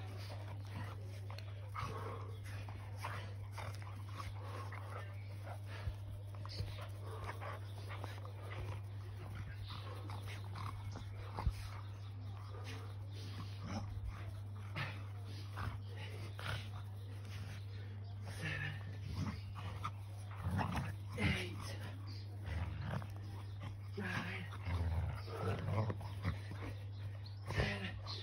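A dog whining and growling softly at intervals, more often in the second half, over a steady low hum.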